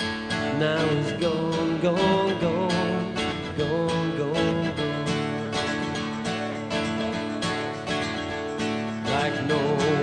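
Live band playing a country song: strummed acoustic guitar with a sung melody line over it.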